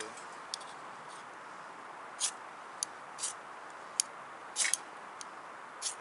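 Knife blade scraped down a ferrocerium fire steel to throw sparks into a dry-grass tinder nest: several short, sharp scrapes at irregular intervals, the longest about three-quarters of the way in.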